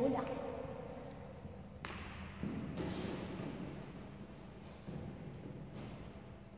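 Soft footsteps on a wooden gym floor, then a sharp knock about two seconds in and a few soft thuds with a brief rustle, as hands, knees and head go down on a gymnastics mat and she kicks up into a headstand.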